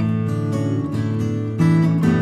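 Instrumental Brazilian acoustic music played on plucked string instruments, with overlapping sustained notes. A louder chord is struck near the end.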